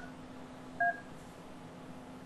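Touchscreen SIP desk phone's keypad tones: the last dialled digit's tone stops right at the start, then one short beep sounds about a second in. A faint steady hum runs under them while the echo-test call connects.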